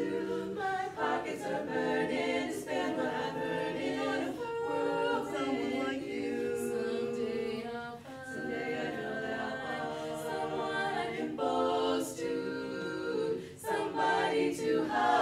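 A women's a cappella quartet singing in close harmony, several voices holding chords together, with a brief pause between phrases about eight seconds in.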